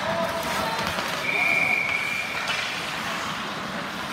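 A referee's whistle blown once, one steady high note lasting a little over a second, starting about a second in, over the noise of the rink with voices calling.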